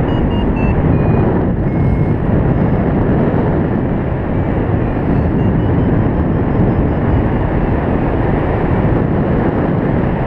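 Steady, loud wind rushing over a helmet- or harness-mounted GoPro's microphone in paraglider flight. Faint short beeps come through now and then, stepping down in pitch near the start and shifting in pitch later, like a flight variometer signalling climb and sink.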